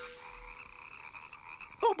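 Faint frog croaking in a cartoon night-woods ambience, with a held music note fading out at the start.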